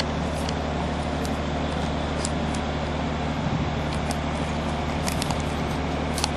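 A steady low hum under a haze of background noise, with a few faint ticks.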